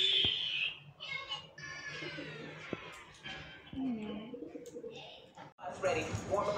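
Feral pigeons cooing, a low wavering call about two-thirds of the way in.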